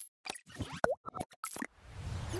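Animated logo-reveal sound effects: a quick run of soft clicks and pops, with one louder plop a little under a second in.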